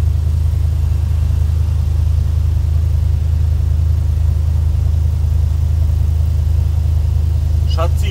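A car engine idling: a steady low rumble.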